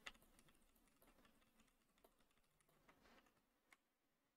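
Near silence, with a few faint, irregular clicks from a computer keyboard, the strongest right at the start.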